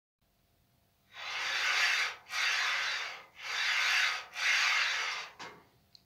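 Four rubbing, rasping strokes of about a second each, one after another, starting about a second in.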